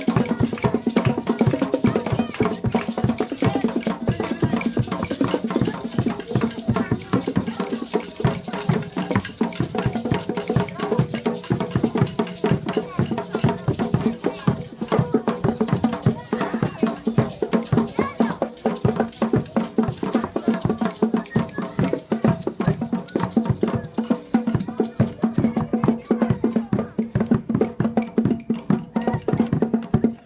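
A group of children playing small hand percussion, wooden sticks and shakers, in a fast, steady, continuous beat.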